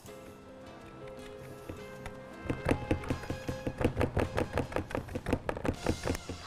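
A fork pricking rounds of pizza dough on a paper-lined metal baking tray: a quick, irregular run of taps and thunks starting about two and a half seconds in. Background music with held notes plays throughout.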